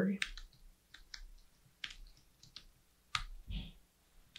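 Typing on a computer keyboard: scattered, irregular key clicks, with a louder keystroke a little past three seconds in.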